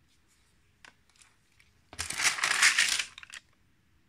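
A stamp stockbook page being turned: a few light taps, then a loud papery rustle lasting about a second, starting about two seconds in.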